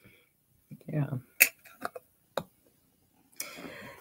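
A few sharp clinks of small hard objects handled on a tabletop, three of them spaced about half a second apart, then a short rustle near the end.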